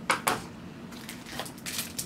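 Paper packaging of a screen-protector kit rustling and crinkling as a sachet is pulled out and handled, with a few short sharp crackles near the start and one about a second and a half in.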